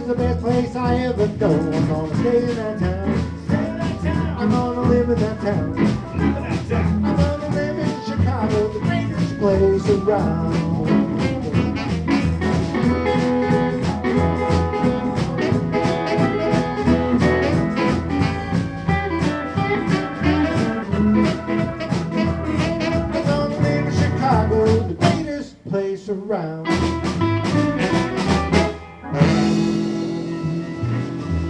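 A live blues band playing an instrumental stretch of a song: saxophone, electric guitar and drum kit over a steady beat. The music drops out briefly twice near the end, then a held chord rings.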